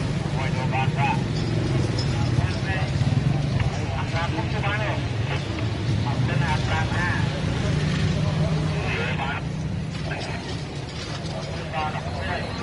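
Several people talking over a steady low drone of street traffic.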